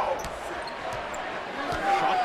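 A basketball being dribbled on a hardwood court under steady arena crowd noise, heard through a TV broadcast.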